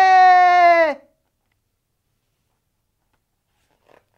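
A voice holding the long, high, sing-song last syllable 'seー' of the drawn-out call 'おーまーたーせー' ('sorry to keep you waiting'). The note is held for about a second and drops in pitch as it dies away. Then comes silence with a faint rustle near the end.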